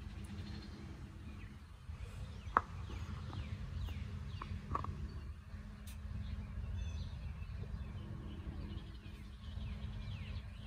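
Small birds chirping in short falling calls over a steady low background rumble, with a few brief sharp high notes, the clearest about two and a half seconds in.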